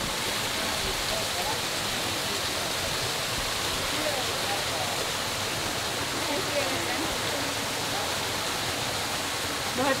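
Small waterfalls pouring down mossy rock into a pool, a steady rush of falling water.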